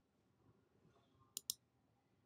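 Near silence, broken about one and a half seconds in by a computer mouse click: two sharp ticks in quick succession as the button is pressed and released.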